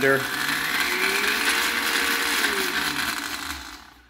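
Countertop blender with a glass jar blending red wine to aerate it. The motor spins up over the first second, runs steadily, then winds down over the last second.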